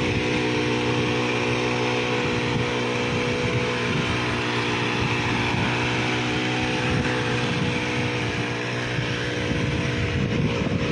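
Brush cutter engine running at a steady speed while its rotating weeder head digs through the soil.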